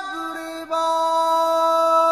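Music from an old enka song recording: a step down in pitch, a short break, then a long held note with slight vibrato.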